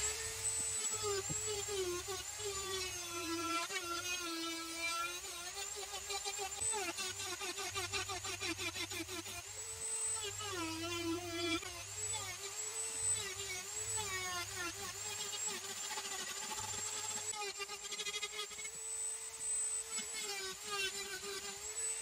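Dremel rotary tool on a flexible shaft running at high speed, carving and smoothing wood. Its steady whine dips in pitch again and again as the bit bites into the wood and then recovers.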